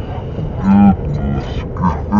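Steady low rumble of a vehicle cabin on the road, with a man's short, low, drawn-out vocal sounds, like hums or groans, about a second in and again near the end.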